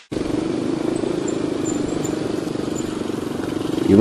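Motorcycle engine running at a steady cruising speed, a constant drone with a fast firing pulse, getting a little louder near the end.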